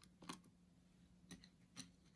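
Near silence with three faint small clicks, the first soon after the start and two in the second half: a precision screwdriver working tiny Torx T5 screws out of a MacBook Pro's logic board area.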